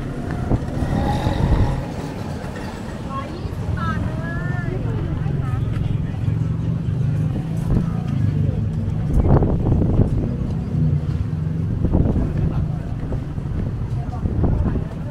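Busy street-market ambience: passers-by talking over a steady low rumble of traffic, with a few short knocks later on.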